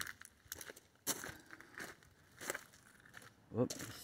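Footsteps on gravel: a few scattered, irregular crunches.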